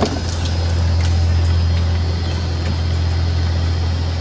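Rubber tyre-cord shredder and its belt conveyor running: a loud, steady low machine hum with a few faint ticks.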